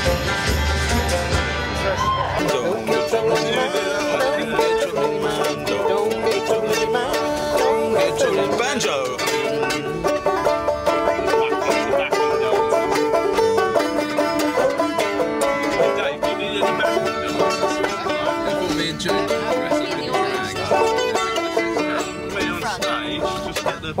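Acoustic string-band music: for the first two and a half seconds the band plays with a deep upright bass, then it cuts to banjo picking without the bass, carrying on to the end.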